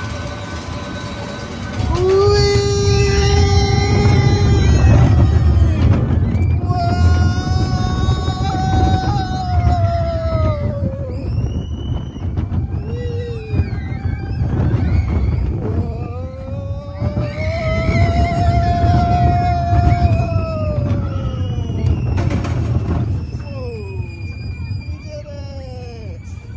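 Riders on a small children's roller coaster letting out long, drawn-out screams and whoops, three long cries rising and falling, with shorter high squeals between. Under them runs a heavy rumble of wind on the microphone as the coaster moves.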